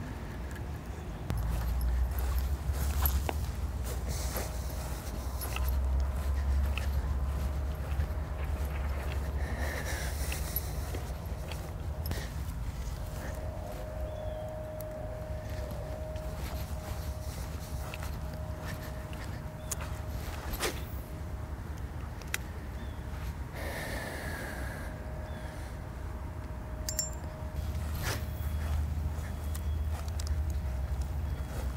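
Low rumble on the microphone with scattered clicks and scrapes from a rod and spinning reel being handled while casting and retrieving, and two brief rushing sounds, about ten seconds in and again near twenty-four seconds.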